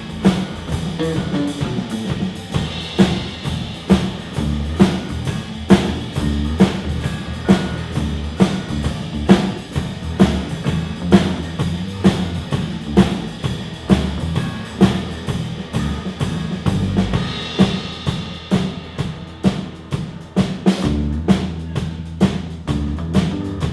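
Live band playing: a drum kit keeps a steady beat, about one stroke a second, over a strong bass line and keyboard.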